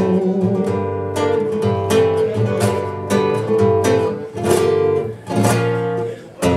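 Classical guitar strummed, chords struck about once a second and ringing between strokes.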